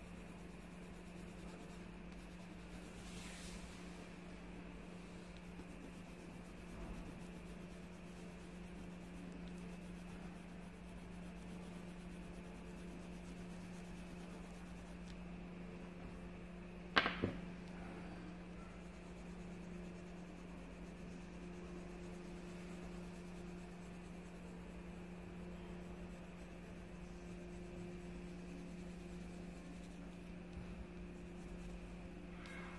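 Faint scratching of a coloured pencil shading on paper over a steady low hum, with a sharp double click a little past halfway through.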